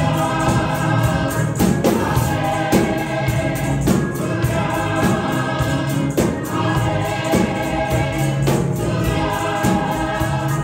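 A small gospel praise team of men's and women's voices singing together over accompaniment, with a steady beat of percussion hits about once a second.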